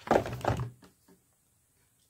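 A few dull thumps and knocks from a plastic VHS-style box set case being handled, bunched in the first second.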